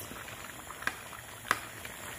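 Pot of okro soup with seafood and greens boiling on the stove: a steady bubbling, with two sharp pops about a second and a second and a half in.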